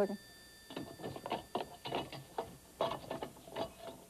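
A telephone ringing, heard as an irregular rattling clatter of clicks that starts about a second in and keeps going, while the call goes unanswered.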